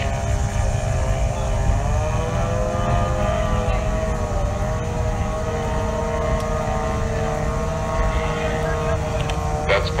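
Outboard racing engine running at high revs, its pitch climbing about two seconds in and then holding steady over a low rumble.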